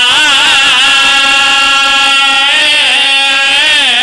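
A man's voice chanting a lament into a microphone, holding long notes whose pitch wavers and turns slowly.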